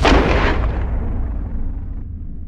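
A single loud gunshot sound effect right at the start, its echo fading away over about a second and a half, over a deep rumble.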